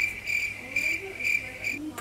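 An insect, cricket-like, trilling: one steady high-pitched call that pulses about four times a second and cuts off suddenly shortly before the end.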